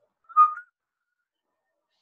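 A single short high tone, like a brief whistle, about half a second in and lasting about a third of a second.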